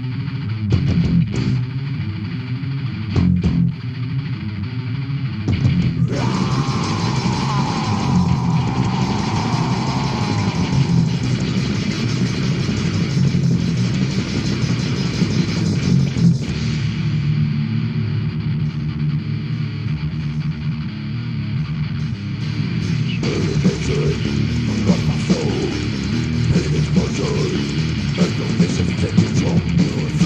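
Death metal demo recording: heavily distorted electric guitars and bass guitar playing fast, dense riffs. About six seconds in the sound grows fuller and a high guitar line slides slowly downward over several seconds; the riff changes again around the middle and later on.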